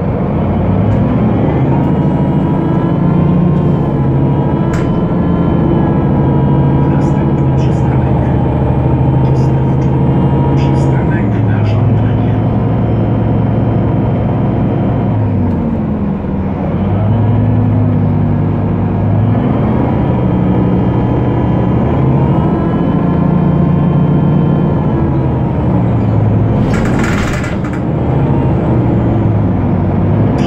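A 2007 Solaris Urbino 12 city bus's DAF PR183 six-cylinder diesel and ZF 6HP-504 six-speed automatic gearbox, heard from inside the cabin under way. The engine note holds, then drops at gear changes, twice. Mid-way it dips and climbs again as the bus slows and pulls away, and a short hiss comes near the end. The gearbox is described as wrecked.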